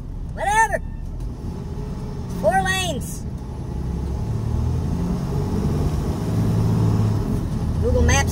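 Semi truck's diesel engine droning low and steady inside the cab, growing a little louder in the second half. Two short rising-and-falling vocal wails from the driver come about half a second and two and a half seconds in.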